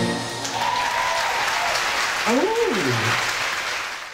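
Audience applauding as a live band's song ends, with one voice in the crowd calling out, rising and then falling in pitch about two and a half seconds in. The applause fades out near the end.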